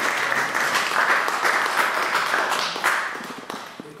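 Audience applauding, the clapping thinning out and dying away in the last second.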